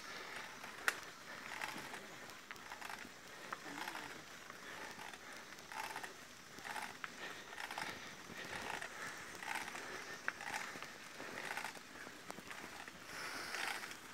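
Mountain bike climbing a steep dirt road under hard pedalling: faint, irregular creaks and crunches from the bike under strain, with a sharp click about a second in.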